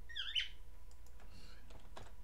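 A pet cockatiel gives a short, high, sweeping chirp just after the start and a fainter call about a second and a half in. A single keyboard click comes near the end.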